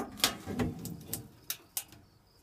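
Metal latch on a small tilt-out storage bin under a trailer seat being unlatched and the bin door swung open: a string of clicks and knocks, the loudest near the start.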